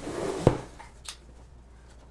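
Cardboard shipping box handled on a wooden table: one solid thump about half a second in as it is set down, then light rustling and a faint click.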